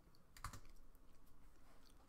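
Near silence: faint room tone with one short click about half a second in.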